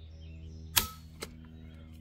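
Savage Axis II's AccuTrigger breaking on an empty chamber under a trigger-pull gauge, one sharp click a little under a second in, at just over four pounds of pull. A fainter tick follows about half a second later, over a steady low hum.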